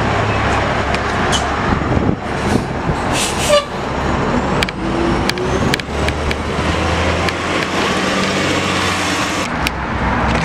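City transit bus running close by, a steady engine drone with scattered clicks, and a short hiss about three seconds in.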